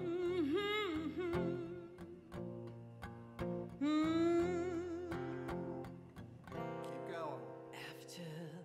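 A woman singing long, wavering held notes over acoustic guitar accompaniment. Her voice rises into a new sustained note about four seconds in, and the guitar notes keep sounding beneath it.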